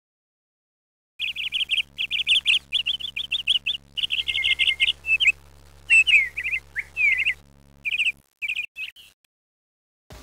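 Small birds chirping in quick runs of short, high notes, starting about a second in and stopping shortly before the end. A faint low steady hum sits underneath and cuts out after about eight seconds.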